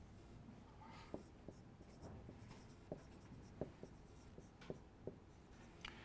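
Marker writing on a whiteboard: faint, short, irregular squeaks and taps of the tip as a line is drawn and words are lettered.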